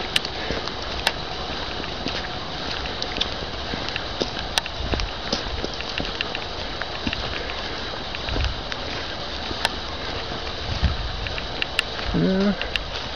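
Footsteps on a forest path with a few dull thuds, over a steady hiss of light rain, with scattered small clicks.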